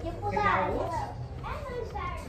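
Children's voices: a child talking or calling out, with no clear words.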